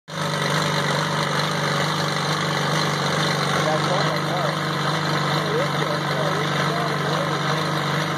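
Caterpillar RD4 crawler bulldozer's engine running steadily.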